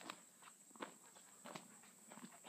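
Faint footsteps on gravel, three steps spaced a little under a second apart.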